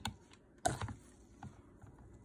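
A single sharp click a little past the middle, then a few faint ticks, as a hand grips and handles a plastic stick blender over a mixing bowl.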